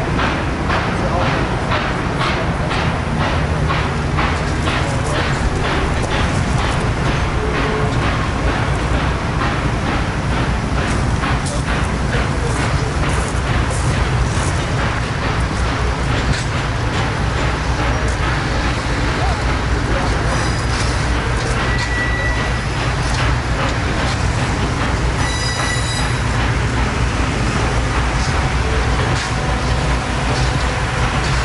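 Passenger train cars rolling steadily past: a continuous low rumble with a regular clickety-clack of wheels over rail joints, plus two brief high-pitched squeals in the second half.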